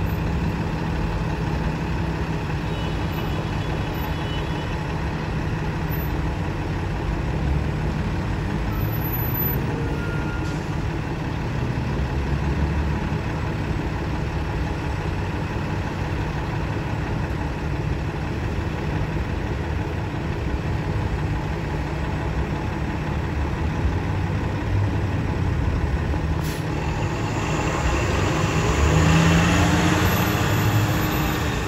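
City transit bus engine idling steadily in traffic, then revving up with a rising pitch over the last few seconds as the bus pulls away, over general street traffic.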